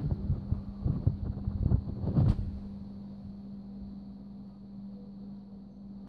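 Several muffled low thumps and rustles in the first two seconds or so, the last one the loudest, then only a steady low hum.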